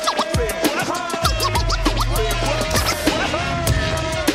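Hip-hop track with DJ turntable scratching over the beat: short rapid pitch sweeps up and down, with the bass line coming in about a second in.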